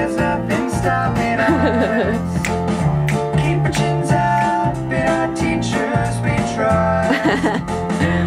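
A guitar-led theme-song demo played back from a music production session over studio monitor speakers, with a steady beat.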